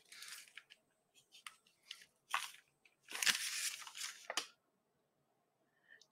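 A sheet of paper rustling and scraping as it is slid and turned on a tabletop, in several short scratchy strokes, the longest and loudest about three seconds in.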